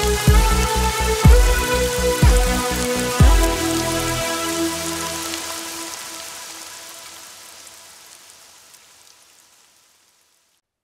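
Instrumental ending of a children's song: a steady drum beat under sustained chords for about the first three and a half seconds, then a final held chord that fades slowly away to silence near the end.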